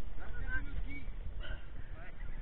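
Low rumble of wind on the microphone, with a few faint short honk-like calls about half a second in and again near a second and a half.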